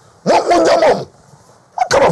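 A man's loud, high-pitched shouted exclamation, one burst of under a second starting about a quarter second in; his voice starts up again near the end.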